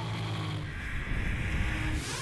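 Snowmobile engine running at a steady pitch, with wind and snow rushing over a microphone mounted on the sled.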